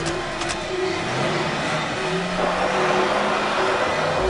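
Car engine running and accelerating, with a low engine note rising slowly in pitch over the second half, over a steady noisy hum.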